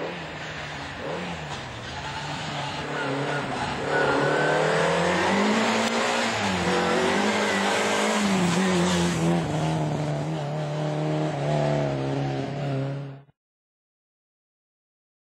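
Rally car approaching at speed, its engine revving hard with the pitch rising and falling between gear changes, and growing louder about four seconds in. The sound cuts off abruptly near the end.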